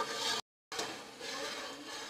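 Steel ladle stirring thick spice masala and scraping against an aluminium pot as the masala fries in ghee. The sound cuts out completely for a moment about half a second in.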